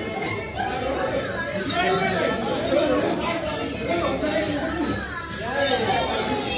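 Many people chatting at once in a large hall, a steady babble of overlapping voices with music playing underneath.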